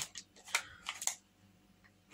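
A few light clicks and rustles of small items and packaging being handled, all in the first second or so, then quiet.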